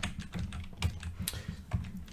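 Computer keyboard typing: a handful of separate keystrokes, irregularly spaced, as a short word is typed.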